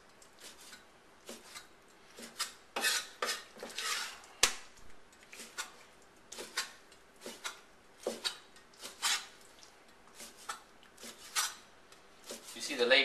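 Large kitchen knife cutting boneless raw chicken thigh into bite-sized pieces, the blade knocking on a wooden chopping board in irregular strokes about twice a second. A sharp click about four and a half seconds in is the loudest.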